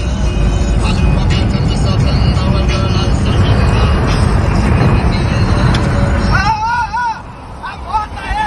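Loud, heavy road and wind rumble of a car travelling at highway speed, heard from inside the cabin. About six seconds in the rumble drops and a voice cries out in a few rising and falling calls.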